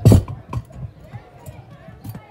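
One sharp metallic clink right at the start as the keys and the metal housing of an Alarm Lock Trilogy keypad lever lock knock together while the lock is handled, followed by a few faint clicks.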